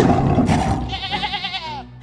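Goat bleating: one long, wavering call, rough at first, that drops in pitch near the end.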